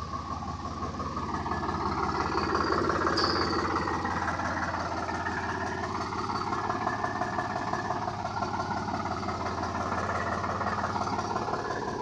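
Sonalika DI 745 III tractor's three-cylinder diesel engine running steadily.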